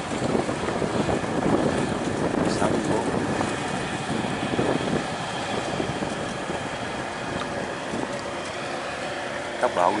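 Boat engine running steadily close by, with water rushing and wind buffeting the microphone. A voice speaks briefly near the end.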